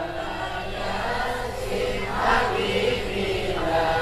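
A large congregation singing an Arabic sholawat together, many voices blended into a steady, blurred chorus.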